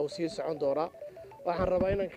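Speech: a voice talking continuously, with short pauses.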